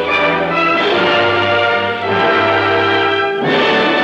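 Orchestral film score playing the closing end-title music in sustained chords, shifting to a new chord near the end.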